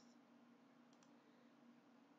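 Near silence: faint steady room hum, with a faint computer mouse click about a second in.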